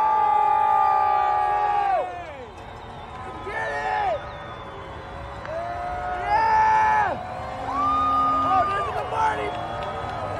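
Parade crowd cheering: several people yelling long, held whoops at once, loudest for the first two seconds, then fresh shouts rising every couple of seconds.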